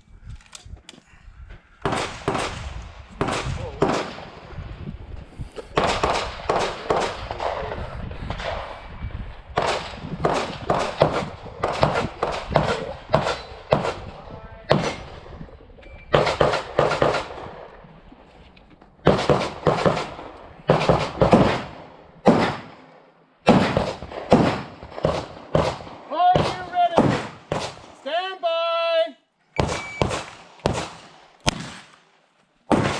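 Handgun shots fired in quick strings of several shots each, with short breaks between strings, as a shooter works through a practical-shooting stage. Near the end a pitched, wavering ringing tone sounds twice among the shots.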